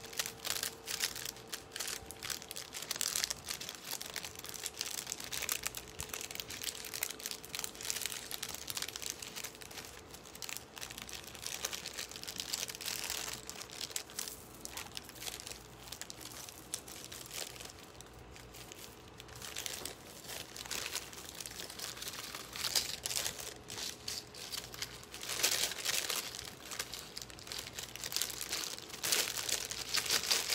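Thin plastic jewelry bag crinkling and rustling in the hands as a necklace is handled and bagged, in irregular bursts with louder stretches near the middle and toward the end.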